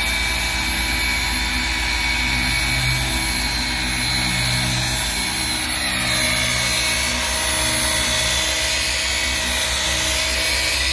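Electric car polisher running steadily with an even motor whine, its round buffing pad working the paint of a car roof during paint correction.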